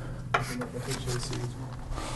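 Faint, quiet speech over a steady low electrical hum, with a few short scratchy sounds like a pen or chalk on a writing surface.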